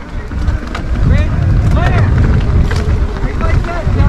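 Wind buffeting the action camera's microphone while riding a mountain bike along a dirt trail: a steady low rumble that grows louder about a second in. Faint voices show through it at times.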